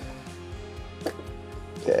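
Soft background music, with a single short click about a second in as an EV charging plug latches into the car's charge port.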